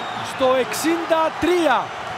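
Mostly a male football commentator talking, over a steady haze of stadium crowd noise from home fans celebrating a goal.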